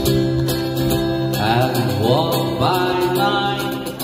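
Solo acoustic guitar strumming with a single singer; about a second and a half in, the voice comes in on drawn-out notes that slide upward.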